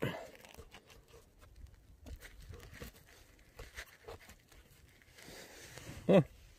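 Faint handling noise: rustles, scrapes and small knocks as a phone is moved about and wedged against the bark of a tree, with jacket fabric rubbing.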